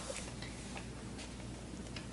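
A few faint, irregular small clicks over a low steady hum.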